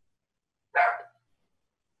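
A dog barks once, a single short bark about three quarters of a second in, heard over a video-call line with dead silence around it.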